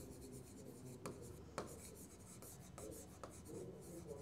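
A pen writing on a whiteboard: faint, short strokes and scratches as words are written out.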